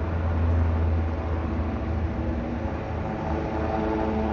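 Diesel passenger locomotive running, a steady low rumble with a few held engine tones; several higher steady tones join in near the end.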